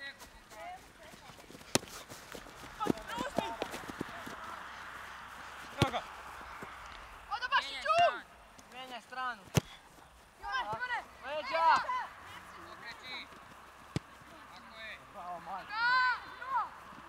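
Young footballers shouting short calls to each other across the pitch, in several groups of high-pitched shouts, with four sharp knocks of the ball being kicked.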